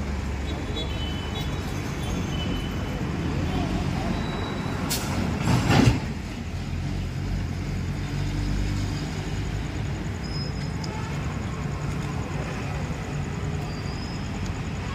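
Road traffic: a steady low engine rumble, with one short, loud burst of noise about five and a half seconds in.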